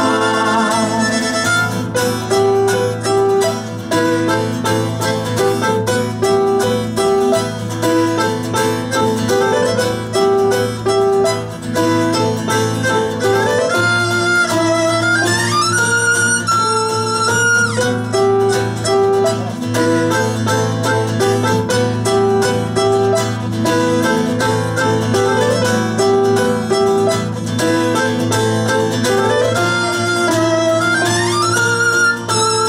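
Instrumental break of an acoustic rock band playing live: a violin carries the melody over strummed acoustic guitars. The violin line slides up in pitch a couple of times, about halfway through and near the end.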